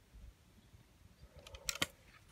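A quick run of sharp clicks about a second and a half in, the loudest two close together near the end, after near quiet.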